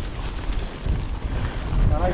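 Mountain bike rolling over a dirt and gravel track, its tyres and frame rattling, under a steady rumble of wind buffeting the camera microphone.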